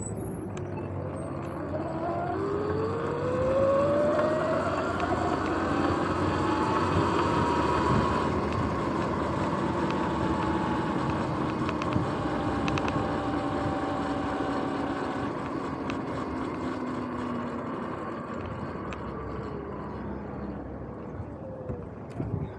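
Sur-Ron X electric dirt bike under way: its motor and drivetrain whine rises in pitch as it accelerates over the first several seconds, holds, then falls away near the end as it slows. Under the whine is a steady rush of wind and tyre noise.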